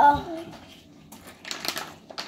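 A voice trails off at the start; then, about a second and a half in, a short crackly rustle of plastic packaging being handled at the table.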